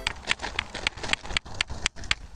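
A small tree's root ball being pulled and shaken free of compact clay soil: a quick, irregular run of short crackles and knocks as roots give and clods break off and drop.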